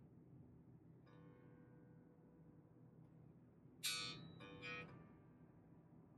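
The G string of an electric bass plucked softly while it is tuned as the reference note: a faint ringing note about a second in, then a sharper pluck near four seconds and another just after, each dying away.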